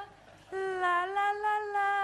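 A woman singing a wordless tune in long held notes, starting about half a second in after a brief gap.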